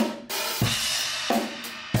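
Acoustic drum kit played as a plain straight beat: a cymbal rings on, with drum hits about every two-thirds of a second.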